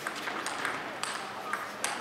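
Table tennis rally: the plastic ball struck by rubber rackets and bouncing on the table, a quick run of sharp pings against the noise of a large hall.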